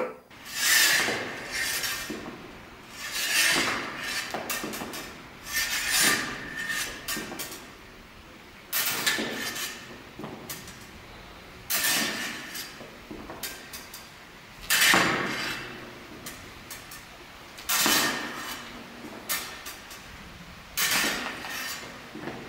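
Saber fencing drill: two fencers' blades meeting in thrust and parry, with a sharp knock and clink about every three seconds, eight times over.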